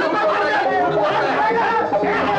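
Several men and women shouting over one another at once, a loud, unbroken tangle of voices.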